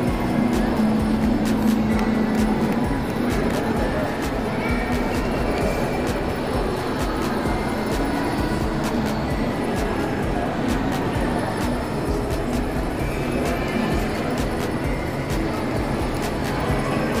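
Crowded indoor hall ambience: background music and the chatter of many people under a steady low rumble, with scattered short knocks and clicks.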